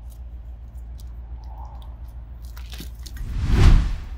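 Flat pry bar scraping and clicking under asphalt shingles, then a loud crunching tear about three and a half seconds in as the shingles around the roof vent are pried up.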